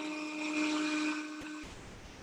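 A small motor whirring steadily at one pitch, which cuts off suddenly about one and a half seconds in, leaving only faint hiss.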